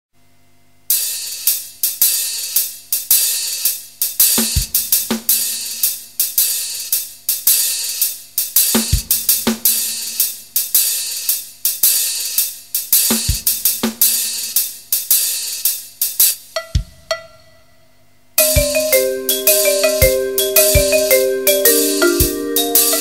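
A percussion quartet playing. Rapid cymbal and hi-hat strokes are punctuated by occasional deep drum hits. Near the end, after a pause of about a second, tuned mallet-percussion notes join the drums and cymbals.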